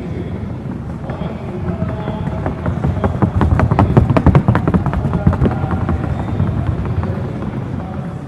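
Rapid, even hoofbeats of a Colombian Paso Fino horse striking a wooden sound board in its four-beat gait. They grow louder to a peak around the middle as the horse passes closest, then fade.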